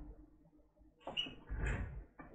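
Handling noise from a laptop and its power cable being moved about on a workbench mat: two short bouts of light scraping and rustling, the second near the end.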